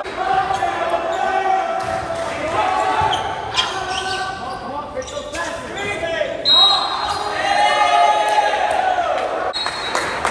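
Volleyball play in a gym: sharp smacks of the ball being hit, mixed with players' shouts and calls, all echoing in the hall.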